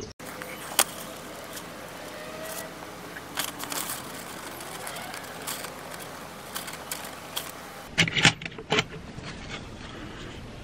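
Small wooden rune discs and a pen-style wood burner handled on a tabletop: scattered light clicks and taps over a steady hiss, with a quick run of louder clicks about eight seconds in.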